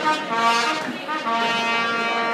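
Trumpet played solo: one note, a brief break, then a long held note from just over a second in.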